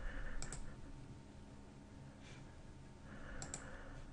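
Faint clicks of a computer mouse button: a quick pair about half a second in and another pair near the end.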